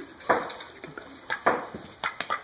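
Mallard duck's bill knocking and rattling against a ceramic bowl of dry kibble as it feeds: a handful of sharp clatters, the loudest about a third of a second in and about a second and a half in.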